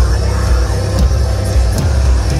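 A live metal band playing loud, with distorted electric guitars, bass and a drum kit, heavy in the low end.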